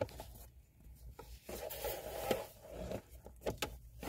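Faint rubbing and rustling with a few light clicks, in a small enclosed space.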